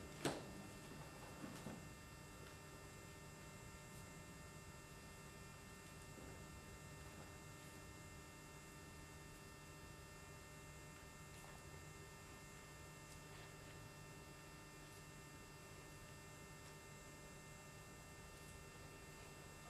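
Near silence: a faint, steady electrical hum with several constant tones, after a brief sound right at the start.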